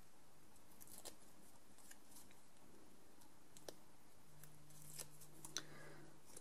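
Faint rustles and a few light clicks of small paper pieces and double-sided tape being handled by fingers, with the sharpest clicks past the middle and near the end.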